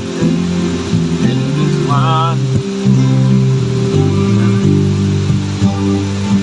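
Harmonium, electric bass guitar and acoustic guitar playing a kirtan tune: the harmonium holds steady chords while the bass walks through short stepping notes under the strummed guitar. A short wavering sung note comes in about two seconds in.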